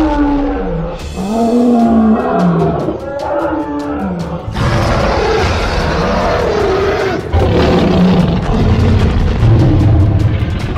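Cartoon monster roar effects: a run of growling cries whose pitch rises and falls, then a louder, rough roar from about halfway, over background music.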